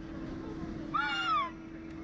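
A child's short high-pitched squeal about a second in, rising then falling in pitch, over a steady low hum.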